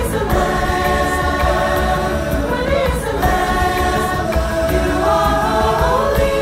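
A mixed choir of men's and women's voices singing a hymn with piano accompaniment, holding long chords that change about every three seconds.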